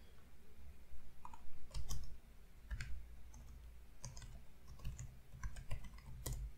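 Typing on a computer keyboard: irregular keystrokes, scattered singly and in short quick runs.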